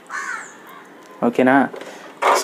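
A crow caws once, briefly, just after the start.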